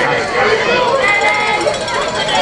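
Spectators shouting and cheering over one another, many voices overlapping at a steady, loud level, with one voice briefly holding a high note about a second in.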